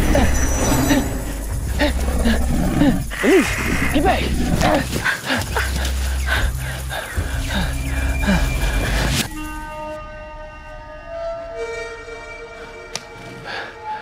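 A woman's frightened cries and yelps over a tense film score with a heavy low pulse. About nine seconds in the pulse and cries stop abruptly, leaving quieter held music notes.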